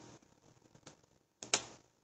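A few light clicks, the loudest and sharpest about one and a half seconds in, from something being handled at the pulpit.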